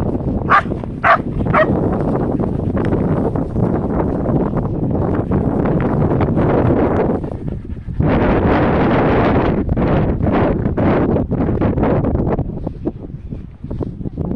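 A dog barking three times in quick succession about half a second in, over wind on the microphone, which swells again around the eighth second.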